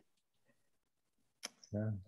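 Near silence for over a second, then a single short click and the start of a spoken "yeah".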